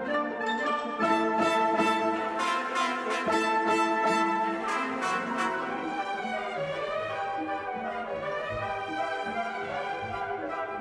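Orchestral music with brass playing held chords, louder from about a second in and softer in the second half.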